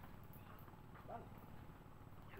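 Near silence: faint low background noise, with a brief faint distant voice about a second in.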